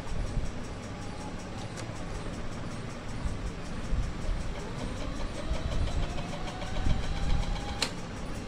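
Sony SLV-X57 VHS VCR rewinding a tape, its transport mechanism whirring with a faint whine that rises steadily in pitch. A sharp mechanical click comes just before the end.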